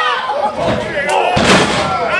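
A body crashing onto the wrestling ring's canvas about a second and a half in, one sharp slam with a couple of lighter thuds before it, over shouting voices.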